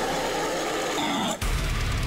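Blackened deathcore song with distorted guitars; the low end of the band drops away for about a second, then after a short break the full band with heavy bass and drums comes back in.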